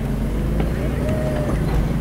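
Vehicle engine running steadily at low revs, heard from inside the cabin as a low, even hum.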